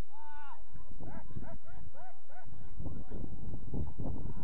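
An animal yapping: one longer, high call at the start, then a quick run of short yaps, about three a second, that stops about halfway through.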